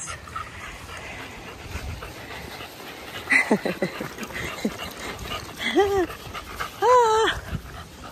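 Dog whining in several short high cries: a cluster of falling whimpers about three seconds in, then two longer rising-and-falling whines near the end, the last the loudest.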